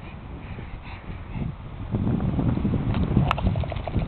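Pug snuffling and breathing noisily as it sniffs the grass with its nose close to the microphone, louder in the second half. There is a single sharp click a little after three seconds.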